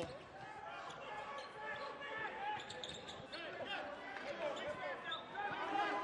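A basketball being dribbled on a hardwood court during live play, amid the voices of the arena crowd and players.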